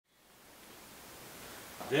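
Faint, even background hiss of room tone fading up from silence, with a man's voice starting at the very end.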